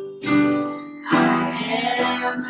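Live worship music: acoustic guitar strummed over electric keyboard chords, two strong strums about a second apart, with a woman's singing voice.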